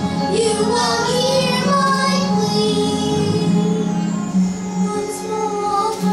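A child singing a musical-theatre song over instrumental accompaniment, with long held sung notes that move in pitch above a steady low accompanying note.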